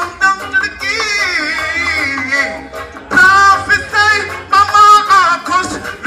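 A male reggae singer sings live into a handheld microphone over a backing riddim played through a sound system. His long, wavering vocal lines pause briefly about halfway through and again near the end, over a steady bass.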